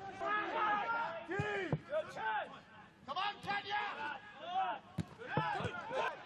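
Players on a football pitch shouting and calling to one another in short calls, with one sharp knock about five seconds in.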